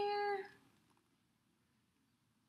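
A cat meowing once: a single held, even-pitched call that tails off with a slight drop about half a second in.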